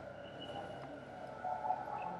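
Quiet room tone in a pause between speech, with a faint, brief, indistinct sound about three quarters of the way through.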